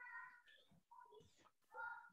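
Near silence on the call line, broken by three faint, short high-pitched tones: one at the start, one about a second in, and one near the end.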